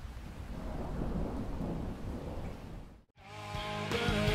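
Steady rain with a low thunder rumble that cuts off abruptly about three seconds in. A moment later a rock band starts playing, with electric guitars and bass.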